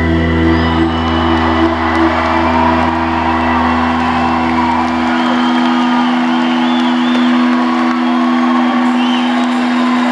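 A live rock band's final chord held and ringing out, its low bass note dropping away about halfway through, while the crowd cheers with whoops and whistles.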